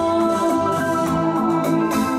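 Live electronic keyboard playing held, organ-like chords over a steady backing beat, with no voice singing.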